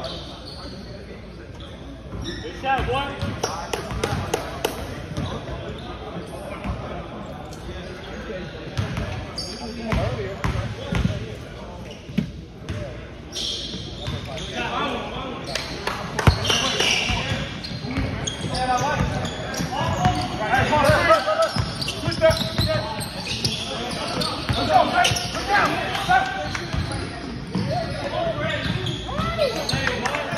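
A basketball bouncing repeatedly on a hardwood gym floor during play, mixed with players' footsteps and shouted calls in a large gym hall.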